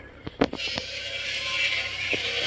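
Pepper vine leaves rustling and brushing against the phone as it pushes through the foliage, with a sharp knock about half a second in and the rustling growing louder after it.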